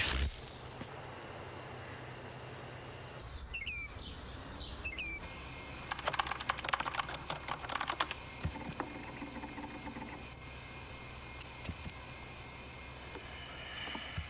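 Computer keyboard typed on in quick rapid clicks for about two seconds, some six seconds in, with a few scattered keystrokes after. A sudden loud burst comes right at the start, and a few short chirps a few seconds before the typing, over a low steady hum.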